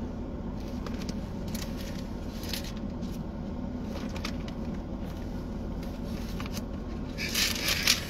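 Thin Bible pages being turned by hand, with scattered soft rustles and flicks of paper and a louder run of riffled pages near the end, over a steady low hum.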